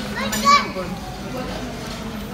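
Children's and adults' voices chattering in the background, with one loud, high child's call about half a second in.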